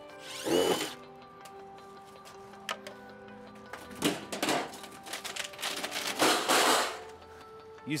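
Cordless drill-driver run in three short bursts, the first spinning up with a rising whine, as screws are backed out of a water heater's sheet-metal jacket. Steady background music plays underneath.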